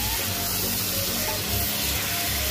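Mutton pieces sizzling steadily in hot oil while being stirred with a spatula, as the meat is browned in the pot.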